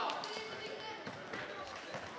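Floorball being played on a hard sports-hall floor: a few sharp knocks of sticks on the plastic ball and the floor, with players' shouts echoing in the hall.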